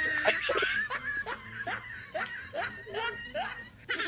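People laughing in a run of short, repeated bursts, two or three a second, fading near the end.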